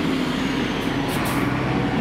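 A heavy road vehicle's engine running close by, steady and loud, with tyre and road noise over it.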